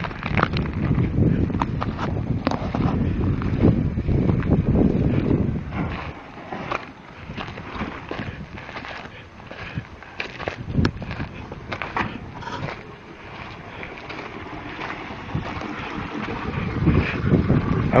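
Wind buffeting the microphone, heavy for about the first six seconds, then easing to lighter rushing noise with scattered clicks and knocks.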